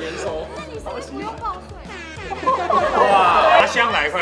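Several people talking over one another, getting louder and denser about two and a half seconds in, over background music.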